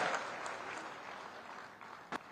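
Applause from a large crowd, fading steadily away.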